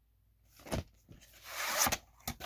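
A VHS cassette handled out of its cardboard sleeve: a light knock just under a second in, then a scraping rustle that builds over about half a second near the end as the cassette slides out.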